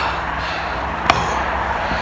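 Steady rushing wind noise on an outdoor handheld microphone, with one sharp knock about a second in.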